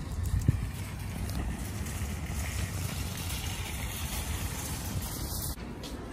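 Footsteps on asphalt with a steady low rumble of wind buffeting the phone microphone, cut off abruptly near the end.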